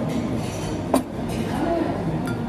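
Steady restaurant din, a low rumble of room noise and distant chatter, with one sharp clink about a second in as a drinking glass is set down on the table.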